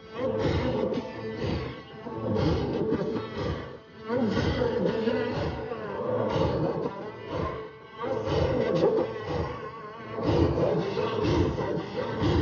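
Rhythmic chanting of a mourning lament, with a new phrase swelling about every two seconds.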